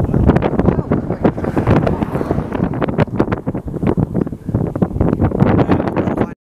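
Strong gusty wind buffeting the microphone, a loud, uneven rumble that surges and drops many times a second.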